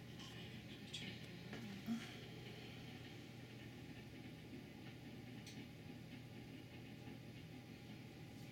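Quiet indoor room tone with a steady low hum and a few faint clicks, the sharpest about two seconds in.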